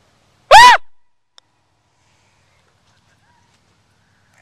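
A single short, loud yelp from a person, about half a second in, its pitch rising and then falling.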